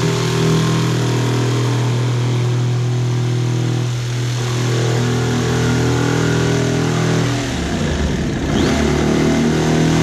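Cordless jigsaw running steadily as its blade cuts a circular hatch opening through a plastic kayak deck. About three-quarters of the way through the steady motor hum breaks up into a rougher, uneven stretch for a second or so, then settles back into the cut.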